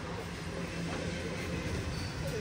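Steady low rumble of city street traffic, a continuous hum with no distinct events.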